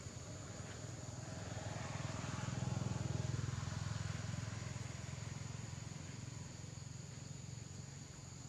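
A passing vehicle engine: a low, rapidly pulsing hum that swells to its loudest about three seconds in and then fades. A steady high insect drone runs underneath.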